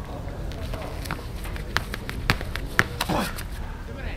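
A men's hammer throw through its turns: a few sharp taps that come slightly quicker each time, then a short falling cry about three seconds in, near the release.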